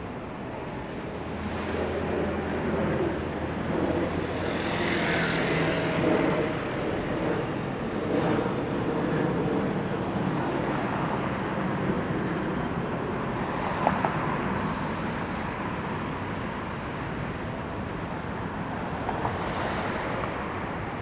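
City street traffic: cars driving along a multi-lane road, with a low engine hum early on and a vehicle passing by about five seconds in. A single sharp click comes near the middle.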